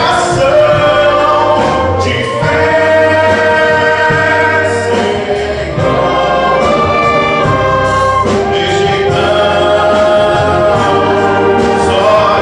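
Church wind band playing a gospel piece: flutes, clarinets, saxophones and brass holding sustained chords over a drum kit, with a short dip in volume about halfway through before the full band comes back in.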